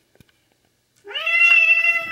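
A domestic cat lets out one long, loud yowl starting about a second in, rising briefly in pitch and then held. It is an angry, hostile cry at the person setting down its food.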